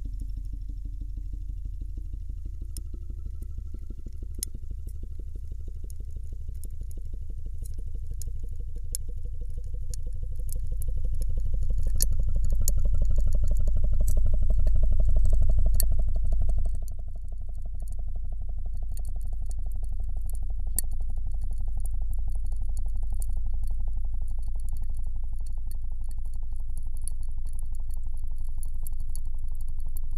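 A pump pressurizing the water-filled test chamber holding the ice block: a low steady drone with a rapid pulsing and a whine that rises in pitch over the first half and then holds steady. The sound briefly grows louder, then drops suddenly a little past halfway; faint sharp clicks are scattered throughout.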